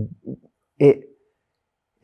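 Only speech: a man says a few short, halting words, then falls silent for about a second.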